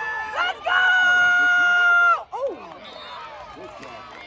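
A spectator's long, high-pitched yell, held steady for about a second and a half starting about half a second in, then breaking off into crowd chatter in the stands.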